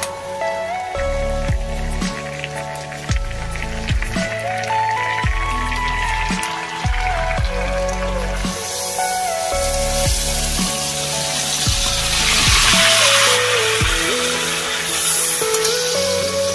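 Background music with a steady beat. About halfway through, a hiss builds and is loudest near the three-quarter mark: soaked black lentils and their water being poured into a wok of cooking pork.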